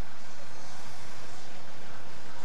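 Steady, unbroken roar of engine and wind noise from the race's escort and camera vehicles running alongside the riders.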